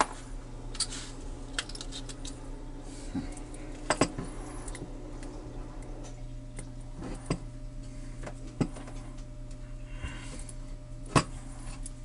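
Sharp metal clicks and clinks at irregular intervals as a steel padlock body and its small loose parts are handled and worked with a hex key during disassembly, the loudest click near the end. A faint steady low hum runs underneath.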